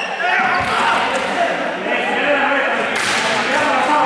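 Several young people's voices talking and calling out together, echoing in a large sports hall, with a dull knock just over half a second in and a sharp crack about three seconds in.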